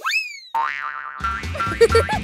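Cartoon 'boing' sound effect: a quick springy tone that rises sharply in pitch at the start, followed by a wavering tone. A little past a second in, upbeat background music with a steady beat comes in.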